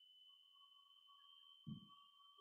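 Near silence: room tone with a faint steady high tone, and a brief soft low sound near the end.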